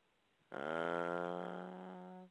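A man's long drawn-out hesitation "uh", held at one steady pitch for about a second and a half, starting half a second in and fading slightly toward the end.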